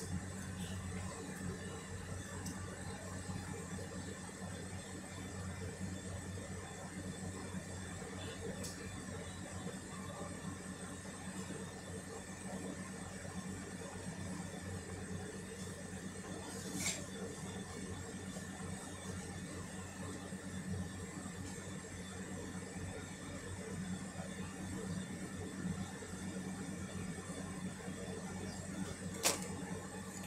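Steady low hum and whir of room noise, with two faint clicks, one about halfway through and one near the end.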